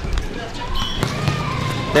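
Outdoor ambience: distant voices, with a few soft knocks and thuds in the first second and a low rumble.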